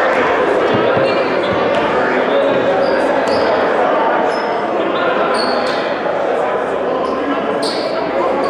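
Basketballs bouncing on a hardwood gym floor under a steady murmur of voices in a large, echoing gym, with a few short high squeaks.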